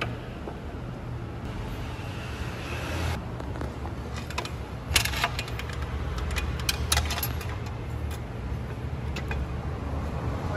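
Metal clinks and a few sharp knocks as a steel motorcycle swingarm is handled and fitted onto the frame, the clearest about five seconds in and again around seven seconds, over a steady low hum.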